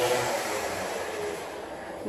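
A steady rushing background noise that slowly fades.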